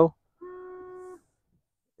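Tesla Model 3 windshield washer pump running for just under a second, a steady hum that starts about half a second in and cuts off, spraying washer fluid onto the windshield.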